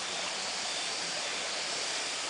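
Shallow water running over a bed of pebbles, a steady rushing hiss.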